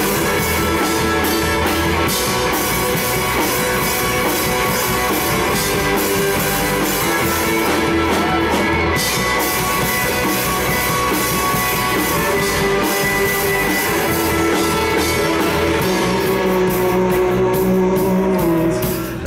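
A rock band playing live: guitars over a drum kit, loud and steady, with cymbal hits recurring throughout.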